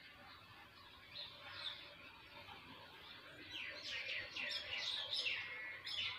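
Small birds chirping: a few faint notes early on, then a quick run of high, falling chirps in the second half.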